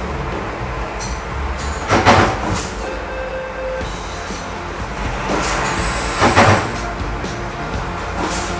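Steady low hum of machinery running in the background, with two brief louder sounds, about two seconds in and again just past six seconds.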